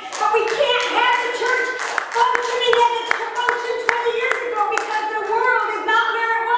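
Hand clapping, several claps a second, over a woman's amplified voice held on long pitches through a microphone.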